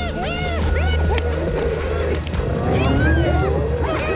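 Spotted hyenas calling as a group: many short, overlapping yelps that rise and fall in pitch, with a rough growl in the middle. A low, steady music drone runs underneath.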